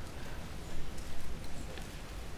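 Handling noise: a few soft, irregular knocks and rustles as Bibles and the lectern are handled, with no speech.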